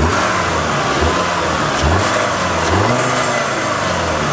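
Skoda Superb's 2.0 TSI turbocharged four-cylinder petrol engine running with the bonnet open and being revved, its pitch rising and falling a few times.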